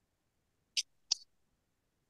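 Two short, sharp clicks about a third of a second apart, against near-silent call audio.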